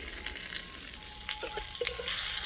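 Stir-fried luncheon meat and green peppers sizzling in a wok just after the heat is turned off, with a few light clicks of a metal ladle against the wok in the second half.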